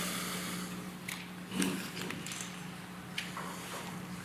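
Courtroom ambience while waiting for the jury: a steady low hum under light rustling and shuffling, with a few scattered knocks.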